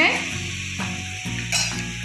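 Garlic-chilli masala chutney sizzling and bubbling in a pan where hot water has been added to the spices fried in oil: a steady hiss with a few small pops.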